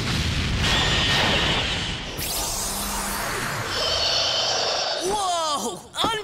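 Cartoon sound effect of a spinning-top special attack striking sand: a loud crash and a long rushing blast, with music under it. A short voice-like exclamation comes near the end.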